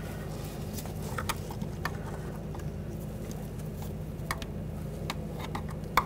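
Faint scattered clicks and rubbing as gloved hands press an ABS wheel speed sensor wire's rubber grommet into its hole, over a steady low hum.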